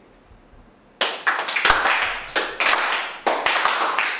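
A small group applauding, starting suddenly about a second in, with single claps standing out sharply.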